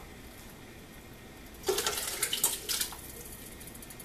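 A short run of clinks, clicks and scrapes from food cans and a plastic container being handled on a kitchen counter, starting about halfway through after a quiet stretch, with more clicks at the very end.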